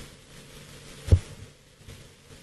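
Faint background hiss with a single short, low thump about a second in.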